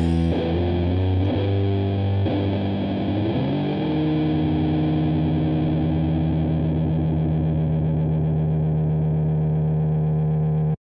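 Raw black metal: heavily distorted electric guitar playing shifting notes for the first three or four seconds, then holding one long sustained chord, the track's last.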